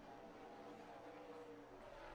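Faint stock car engines running at speed, heard at low volume through a TV race broadcast.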